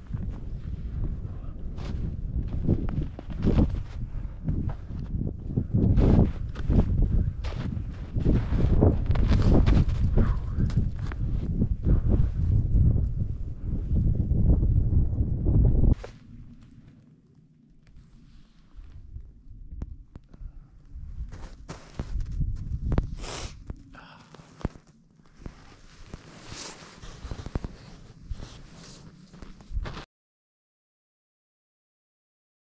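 Strong mountain wind buffeting the microphone in gusts, with irregular crackling knocks. About 16 seconds in it cuts to a much quieter gusty hiss with scattered clicks.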